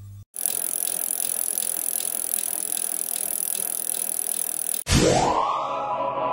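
A bicycle rolling with a fast, even ticking from its wheels. It cuts off suddenly near the end, and a loud synthesized tone sweeps upward and holds as electronic music begins.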